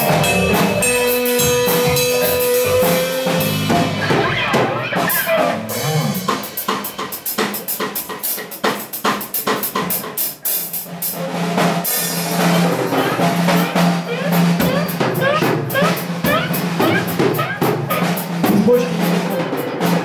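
Live band music with the drum kit to the fore: bass drum, snare and cymbal hits under other instruments, with one note held early on. The playing thins out and drops in level in the middle, then builds back to a full sound.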